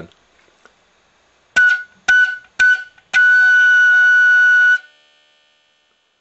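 B-flat marching-band flute playing the note A: three short tongued notes about half a second apart, then one long held note of about a second and a half, all on the same pitch.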